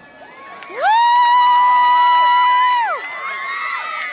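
A girl's long, high-pitched cheering yell, held steady for about two seconds before it drops away. Other girls cheer and shout around and after it.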